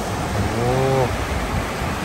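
Steady rush of a shallow, rocky mountain river running over stones.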